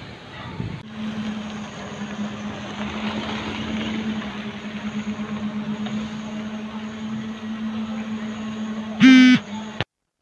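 Street traffic noise with a steady low engine hum, and a brief loud vehicle horn honk about nine seconds in. The sound cuts off suddenly just before the end.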